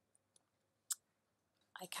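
A few small clicks in a quiet room: two faint ticks, then one sharp click about a second in. A woman starts speaking near the end.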